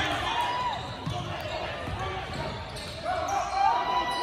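Basketball bouncing on a hardwood gym floor as players run the court, with short knocks through the echoing hall and voices calling out now and then.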